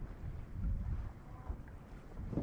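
Wind buffeting a camera microphone: an uneven low rumble.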